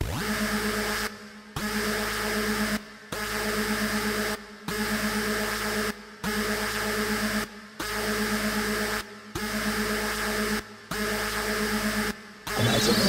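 Harsh, buzzing electronic drone holding a few steady pitches, chopped into blocks of a bit over a second with short breaks between them, repeating about every 1.6 seconds: a machine-like synth intro of a hardcore gabber mix.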